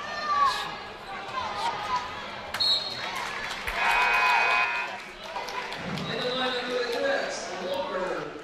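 Basketball game sounds in a gymnasium: crowd voices and shouts from the stands over a basketball bouncing on the hardwood court, with a louder stretch of voices about four seconds in.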